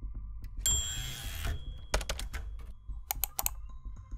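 Sound effects of a news-programme intro: a short swish of hiss with a thin high tone, then clusters of sharp typing-like clicks over a low pulsing rumble.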